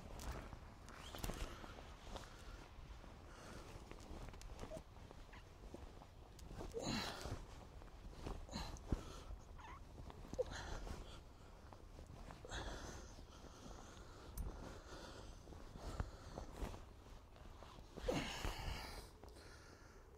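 Faint, sporadic scraping and scuffing of sandy soil being dug out of a shallow hole with a small hand tool, with a few louder brief scrapes.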